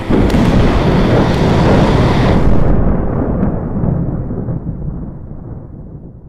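Thunder sound effect: a sudden loud crack followed by a heavy rolling rumble. The crackling top dies away about two and a half seconds in, and the low rumble fades out gradually.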